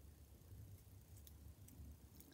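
Near silence: room tone with a faint low hum and a few very faint ticks.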